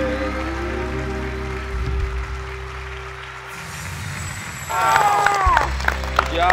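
A live rock band (electric guitars, bass and drums) ends a song on a long held chord that fades away. About five seconds in, hosts and audience break into whoops, shouts and applause.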